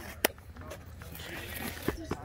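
Faint, distant talking, with a sharp click about a quarter second in and a low thump near the end.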